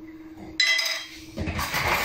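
A metal utensil clinks against kitchenware once, a ringing clink with a clear pitch about half a second in that dies away within a second, followed by lighter handling noise of dishes.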